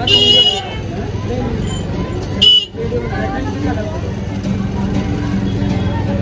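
A vehicle horn honks twice: a loud, high-pitched half-second honk at the start and a shorter one about two and a half seconds in, over the chatter and traffic of a busy market street.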